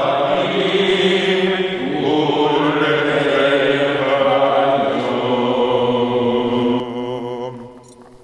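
Men's voices chanting together in a slow, sustained synagogue melody, dying away about seven seconds in.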